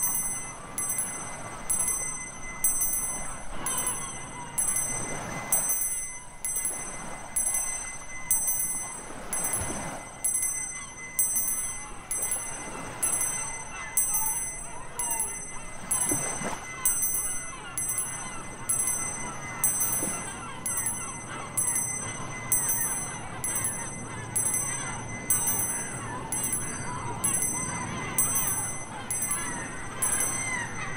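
Tibetan Buddhist hand bell rung over and over in a steady rhythm, about three strokes every two seconds, its bright high ring carrying over the wash of surf.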